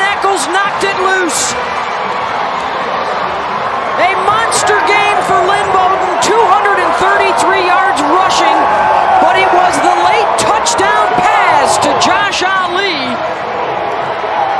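Football players and a stadium crowd yelling and cheering in a dense wash of overlapping voices, with sharp slaps and claps scattered throughout: a team celebrating a win.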